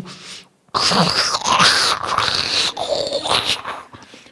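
A man's loud, breathy, drawn-out groan-like vocal sound with no clear pitch. It starts just under a second in and lasts about three seconds.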